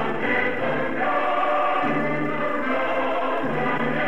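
A choir singing an anthem in long held notes over musical accompaniment, in a dull-sounding recording with no high treble.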